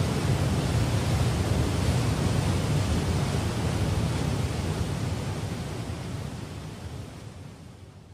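Rushing water, a steady hiss with no tones in it, fading out gradually over the last few seconds.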